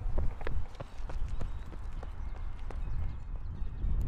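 Brisk footsteps on a paved sidewalk, about three steps a second, over a low rumble of wind on the microphone.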